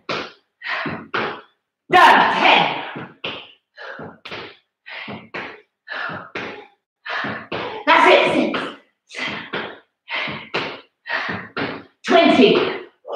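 A person doing repeated jumps on a wooden floor, with a quick burst of sound about twice a second: landings and hard, effortful breaths on each jump, a few of them louder.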